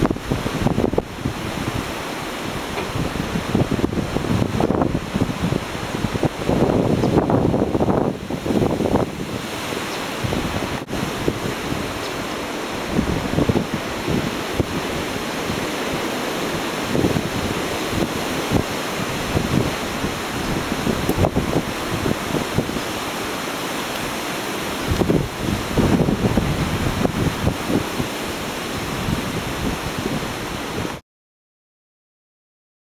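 Wind buffeting the camera microphone: a continuous rushing noise that rises and falls in irregular gusts.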